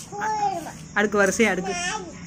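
A small child's high-pitched voice without clear words: one drawn-out sound early on that glides down, then a few short quick sounds with rising and falling pitch.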